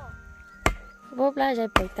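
Two sharp knocks about a second apart, a wooden-handled hand tool striking the hard earth, with a short burst of speech between them.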